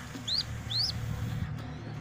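Two short, high bird chirps about half a second apart, over a steady low hum.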